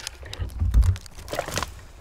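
Dead black spruce trunk cracking and snapping, a run of sharp cracks with a heavy dull thump about three-quarters of a second in and a few more cracks after.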